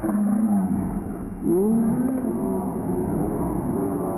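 Slowed-down audio of a studio scuffle: the people's shouts and voices are stretched into deep, drawn-out, wavering sounds with slow pitch bends.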